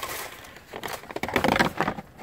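Plastic storage tote and its lid being handled over a wire trap: irregular rustling, scraping and light knocks of hard plastic, busier in the second half.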